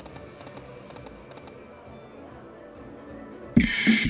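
Buffalo Link slot machine's game sounds playing quietly while the reels spin, then a sudden loud burst of machine sound about three and a half seconds in.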